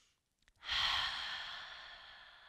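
A woman's slow, deep out-breath, audible and noisy, starting about half a second in and fading slowly: a deliberate breath taken while holding a yoga pose. The end of a quieter in-breath trails off at the very start.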